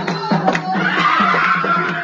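Wedding music with quick, steady hand-drum beats and group singing. From about a second in, a long, high, wavering cry of a woman's voice rises over the drumming.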